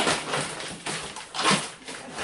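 Plastic packaging on frozen food crinkling and rustling as it is handled, in a few irregular bursts.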